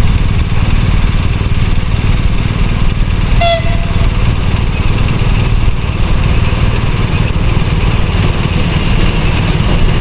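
A class 162 electric locomotive hauling a passenger train approaches with a steady low rumble, and a hiss grows louder toward the end as it nears. A brief horn-like tone sounds once, about three and a half seconds in.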